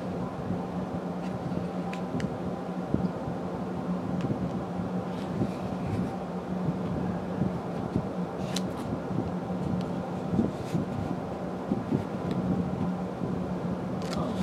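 Steady low machine hum with a faint rush of air, and a few soft clicks.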